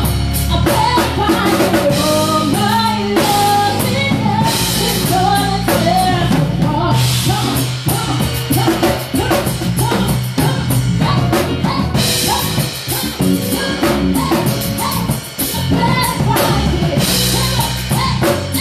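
Live band music: a woman singing into a microphone over a drum kit and a low bass line.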